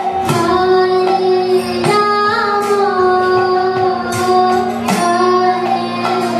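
Kirtan chanting: a woman's voice singing long, gliding held notes over a steady drone, with bright strikes of small hand cymbals (kartals) cutting through every second or so.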